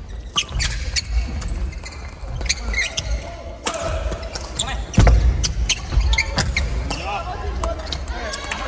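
A badminton doubles rally: sharp racket strikes on the shuttlecock, squeaking court shoes and thudding footsteps on a wooden gym floor, with the loudest thud about five seconds in.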